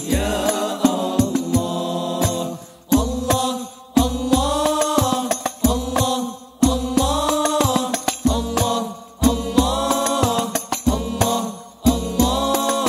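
A group of male voices sings sholawat in unison to Al Banjari frame drums. The singing comes in phrases of two to three seconds, each broken by brief gaps, with deep drum strokes and sharp slaps under and between them.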